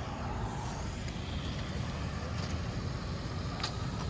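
A motor vehicle's engine running nearby: a steady low rumble with a few faint ticks.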